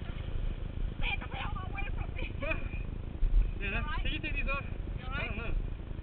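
Indistinct voices talking in short bursts over a steady low rumble.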